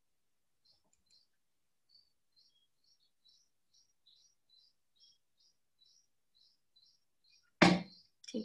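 Faint chirps from a small bird, short upward flicks repeated steadily about two to three times a second. A brief loud burst cuts in near the end.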